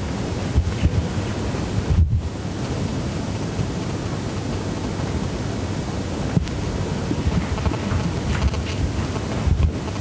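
Microphone handling noise: a loud, steady rumbling rustle with a brief cut-out about two seconds in.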